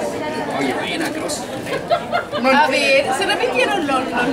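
Only speech: a small group of people chattering over one another, with one voice rising louder in the second half.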